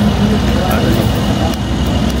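Mercedes-AMG SLC 43's 3-litre twin-turbo V6 running steadily at idle, a constant low rumble, with faint voices in the background.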